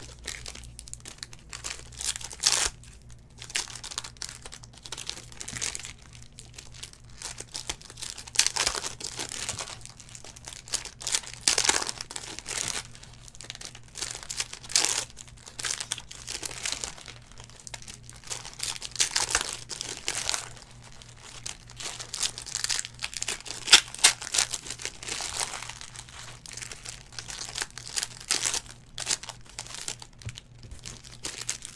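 Foil trading-card pack wrappers crinkling and tearing as packs are opened, in irregular bursts, over a faint steady low hum.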